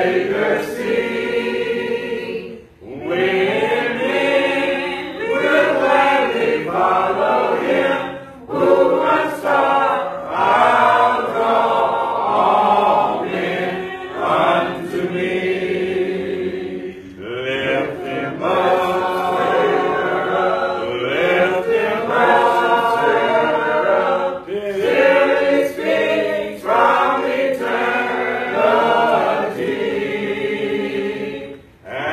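A congregation singing a hymn a cappella, unaccompanied voices together in long phrases with short breaks between lines.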